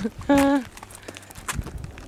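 A woman's short voiced exclamation, then a few scattered sharp taps and knocks in the second half, the clearest about a second and a half in.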